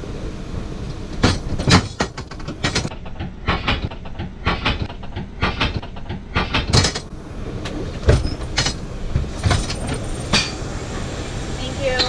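Steady low hum of an airliner cabin at the boarding door, with irregular knocks, clicks and clatters scattered through it.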